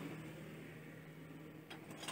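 Faint engine hum of a passing vehicle, one steady low tone that fades away, with a light click near the end.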